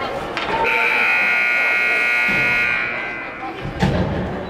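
Ice rink scoreboard buzzer sounding one steady, high-pitched blast of about two seconds, followed near the end by a single sharp bang.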